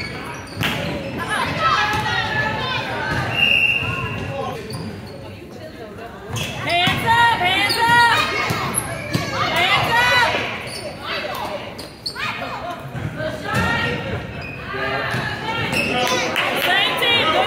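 Basketball bouncing on a hardwood gym floor during play, with voices calling out, all echoing in a large gymnasium.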